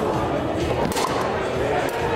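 Two sharp clacks from a foosball table, about a second apart, over steady background voices and music.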